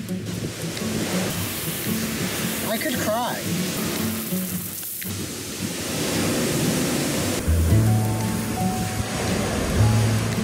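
Background music with a steady, repeating bass line, laid over a continuous rushing noise of surf.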